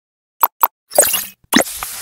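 Sound effects of an animated logo intro: two quick pops about half a second in, then a longer noisy burst around one second, and another hit at about a second and a half that carries on.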